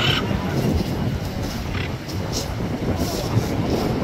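Blue-and-gold macaws giving a few short, harsh squawks over steady wind noise on the microphone.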